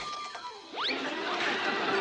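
Two quick rising whistle-like swoops, cartoon sound effects, one right at the start and one just under a second in, followed by busy cartoon chase music.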